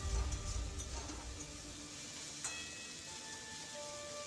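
Sliced onions sizzling as they fry in an aluminium wok, stirred with a metal spoon, with one clink of the spoon against the pan about halfway through. Background music plays over it and is louder in the first second or so.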